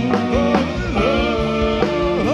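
Live rock band playing a song: electric guitars, keyboard and drums keeping a steady beat, with a singer's voice bending and wavering over them.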